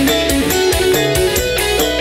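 Campursari band music played live, with a steady beat of about four strokes a second under a melodic instrumental line.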